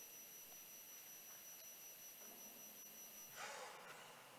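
Near silence: quiet room tone with a faint, steady high-pitched whine that stops about three and a half seconds in, when a brief soft noise is heard.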